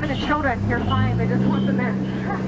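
People talking aboard a tour boat over the steady low hum of the boat's motor, which rises a little in pitch about a second in.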